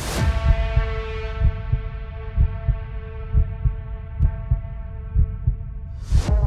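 Heartbeat sound effect: low thumps in pairs, about one beat a second, under a sustained ringing tone with many overtones. The tone sets in with a sudden hit at the start and its brightness slowly fades.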